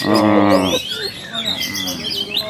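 A man laughs briefly, then caged oriental magpie-robins (kacer) sing in the background, a busy mix of quick whistled chirps and glides from several birds.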